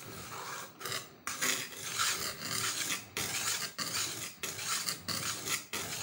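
A flat grey stone rubbed back and forth over a wet whetstone, stone on stone: a gritty scraping in repeated strokes, about one a second, with brief pauses at each change of direction.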